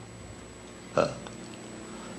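A pause in a man's lecture: low steady background hiss, broken about a second in by a single short voiced "uh" of hesitation.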